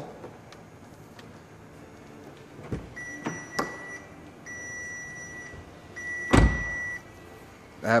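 A car's dashboard warning chime sounding three times, each tone steady and about a second long, as the 2013 VW Beetle's ignition is switched on. A few clicks and a dull thump from handling in the cabin come in between, the thump the loudest, just after the third chime starts.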